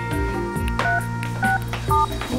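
Phone keypad tones as a number is dialed: three short two-note beeps over steady background music.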